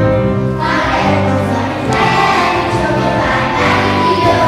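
Children's choir singing together, with held low accompaniment notes sounding beneath the voices.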